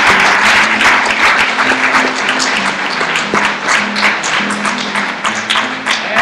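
An audience clapping over an acoustic guitar being played, with steady picked and strummed notes under the applause.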